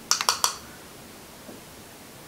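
A quick run of small, sharp clicks in the first half second, from handling the highlighter compact and brush, then faint room tone.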